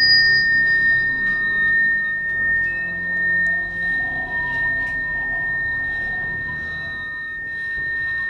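Handheld chime bar (a metal tone bar on a wooden block), struck with a mallet just before and left ringing by a person's ear: one clear high tone that slowly fades, its brighter overtone dying away sooner. It is being used to "change the vibration" in a cleansing.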